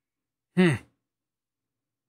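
One short vocal sound with a falling pitch, like a sigh or an 'ahh', about half a second in; otherwise silence.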